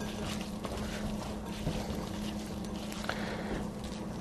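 Hands tossing oil-coated artichoke pieces and vegetables in a glass bowl: quiet wet squishing and rustling, with a steady low hum beneath.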